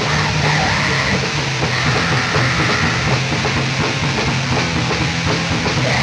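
Raw black metal band playing: distorted guitars, bass and drums in a dense, unbroken wall of sound, from a 1995 four-track recording.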